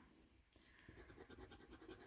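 Faint, irregular scratching of a metal scraping tool on a lottery scratch card, rubbing off the scratch-off coating, starting about half a second in.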